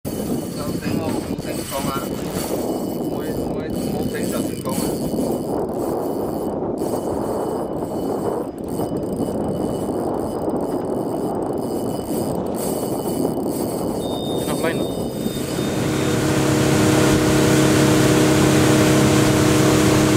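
Wind and sea rush on an open fishing boat with faint voices; about two-thirds of the way through, an outboard motor's steady running drone sets in and grows louder.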